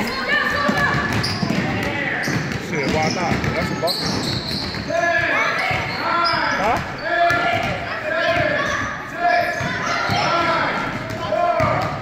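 Basketballs bouncing on a hardwood gym floor during play, mixed with sneakers squeaking and players and spectators calling out and talking, all echoing in a large gym.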